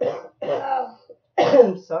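A woman coughing, three coughs in a little under two seconds.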